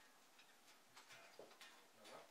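Near silence: a few faint, uneven ticks and clicks over quiet room tone.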